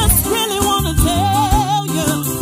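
Women's vocal group singing gospel into microphones over an instrumental backing with a steady beat and bass. About a second in, one voice holds a note with vibrato.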